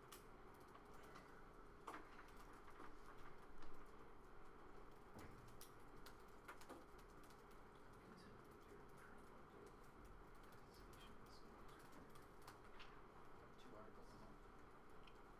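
Faint, irregular clicking of typing on a laptop keyboard over a steady low room hum, with one louder bump a few seconds in.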